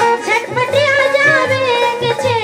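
A woman singing a Bundeli folk song live into a microphone in a high, ornamented voice, over a steady low drum beat.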